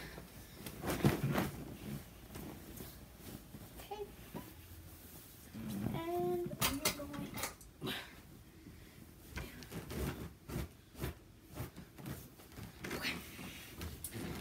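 Cotton bed sheets and a pillowcase being shaken out and handled: irregular rustles and flaps, the loudest about a second in. A short pitched vocal sound comes about six seconds in.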